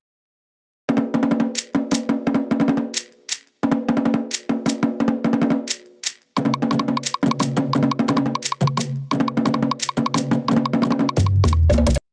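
Recorded Tahitian drum music played back as a sound test: fast, dense strokes on wooden slit drums, with two short breaks, about three and six seconds in. A deeper drum comes in after the second break, and the music cuts off suddenly at the end.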